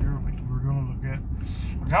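Steady low rumble of a car driving, heard from inside the cabin, with quiet talking over it.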